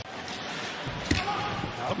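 Ice hockey arena ambience: a steady crowd murmur, with a sharp clack of a stick hitting the puck about a second in.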